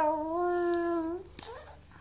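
A three-month-old baby's long, drawn-out vocalising: one sustained pitched call that falls in pitch, levels off and stops a little over a second in, followed by a few faint small sounds.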